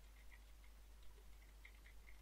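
Faint, irregular clicks of computer keyboard keys being typed on, about a dozen light taps over a low steady hum.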